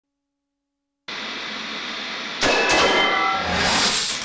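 Sound effect of a TV production company's logo ident. A steady hiss starts about a second in. About two and a half seconds in it turns into a louder whoosh with a few brief chiming tones, growing brighter toward the end.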